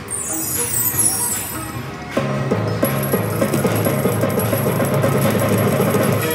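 Double Blessings penny video slot machine's electronic sound effects: a falling run of high chimes as the reels settle. About two seconds in, the win celebration starts, a busy jingle with rapid clinking over steady tones as the win meter counts up.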